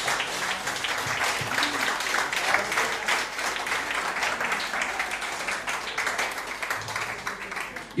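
An audience applauding with dense, many-handed clapping that eases off near the end.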